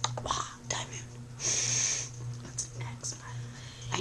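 A person whispering, with a long hushing hiss in the middle and a few sharp clicks, over a steady low hum.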